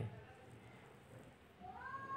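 Faint room tone, then near the end a single drawn-out animal call that rises in pitch and then holds steady.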